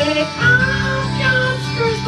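Rock music: electric guitar with a sung vocal line that glides between held notes, and a deep steady note coming in about half a second in.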